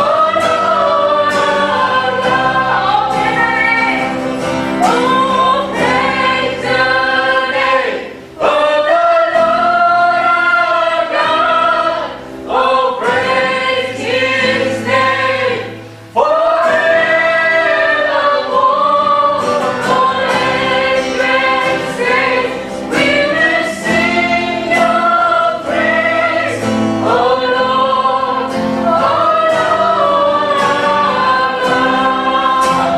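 A worship song sung by women's voices over acoustic guitar, a praise chorus with lines sung in long, held phrases. The singing breaks briefly between lines about 8, 12 and 16 seconds in.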